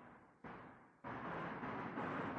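Steady, hiss-like background noise with no clear source. It starts abruptly and steps up in level twice, about half a second in and again about a second in.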